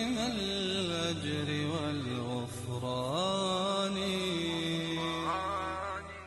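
Outro music: a slow chanted vocal melody with long held notes that slide between pitches, over a low steady drone.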